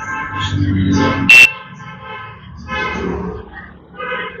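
A short, loud, high-pitched honk about a second and a half in, over muffled background voices.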